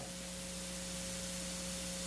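Steady background hiss with a faint constant hum: the room and recording system's noise between spoken phrases.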